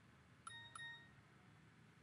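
Short electronic notification chime from a handheld device: two quick notes about a third of a second apart, ringing briefly over quiet room tone.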